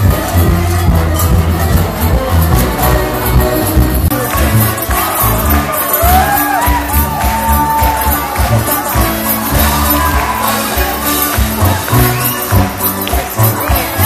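Live amplified folk band music heard from the crowd, with audience cheering and whoops over it about halfway through.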